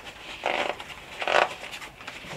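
The breakaway zipper on the cover of a Crewsaver inflatable lifejacket being pulled open in two short pulls, about a second apart.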